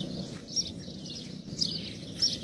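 Birds chirping briefly a couple of times in the background over low ambient noise.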